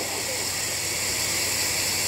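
A steady hiss with a faint low hum from an amplified public-address system, heard in a gap between spoken lines.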